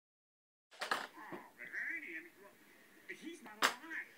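Voices talking, with two sharp slaps: one about a second in and a louder one near the end.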